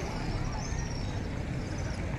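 Steady low outdoor rumble with a faint hiss above it and a few faint, short chirp-like sounds.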